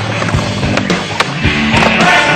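Skateboard rolling on concrete, with several sharp clacks from the board, under rock music.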